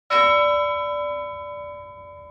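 A single bell-like metallic chime, struck once just after the start and ringing on as it slowly fades.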